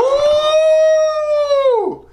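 A man's long, high falsetto 'ooooh' of delight, swooping up at the start, held steady for almost two seconds and falling away near the end.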